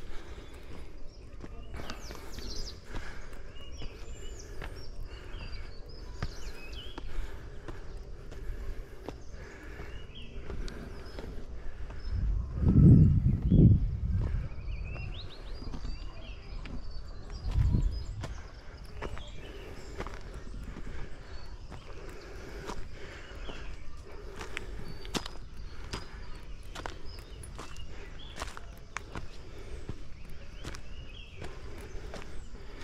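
Footsteps of a person walking uphill on a dirt path, with hard breathing from the tired climber. Two loud, low rumbles on the microphone come about halfway through.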